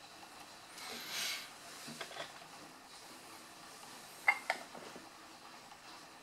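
Quiet handling of small parts at a workbench: a brief rustle about a second in, a few faint ticks, then two sharp clicks close together about four seconds in.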